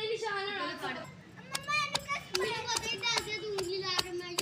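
A child's high voice, calling or speaking in long drawn-out sounds, with a few sharp knocks of a wooden pestle pounding green chillies and garlic in a clay mortar in the second half.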